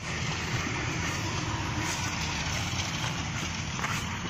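Steady outdoor background noise that starts abruptly, with no clear single source.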